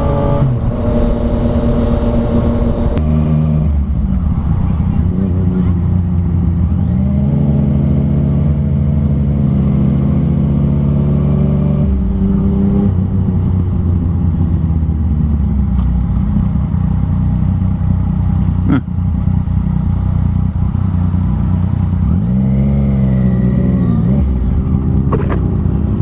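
Yamaha FZ-09's inline three-cylinder engine running under way, its pitch climbing as the rider accelerates and dropping at the shifts and when he rolls off. There is a long rise that falls away about halfway through, and a shorter rise near the end.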